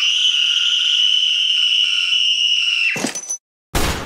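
A girl's high-pitched scream, held steady for about three seconds. It is followed by a short sharp click and, near the end, a loud burst of noise as the pistol comes out.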